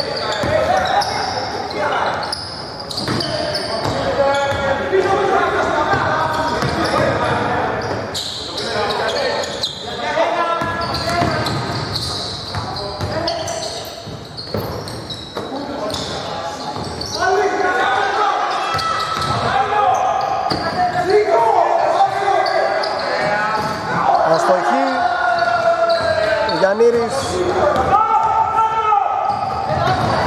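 A basketball bouncing repeatedly on a hardwood court during play, with voices calling out, echoing in a large hall.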